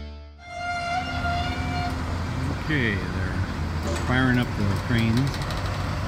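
Music fades out in the first half-second, then a crawler crane's diesel engine runs with a steady low hum as it holds a bridge beam aloft. A few short voices call out over it.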